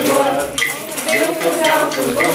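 Several voices singing a Latvian folk song together to a kokle, with a sharp accent in the beat about twice a second.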